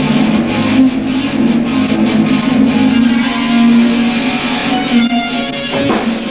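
Live rock band playing the opening of a song: electric guitar leading, with bass notes held underneath.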